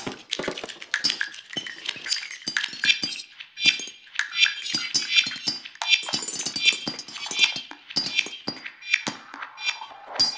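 Free-improvised snare drum and live electronics: sticks clicking and clattering on a snare drum with objects laid on its head, mixed with sampled, processed fragments from a monome grid and norns setup. From about three seconds in, short high pitched blips recur about every three-quarters of a second.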